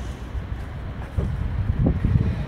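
Wind buffeting a phone microphone: an uneven low rumble that swells about a second in.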